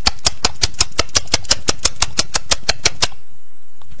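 Rapid, evenly spaced ticking, about seven sharp clicks a second, over a steady low background; the ticking stops about three seconds in.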